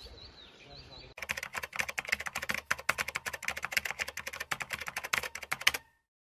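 Rapid keyboard-typing clicks, a typing sound effect behind the channel-name title, starting about a second in and stopping suddenly just before the end. Faint bird chirps come before it.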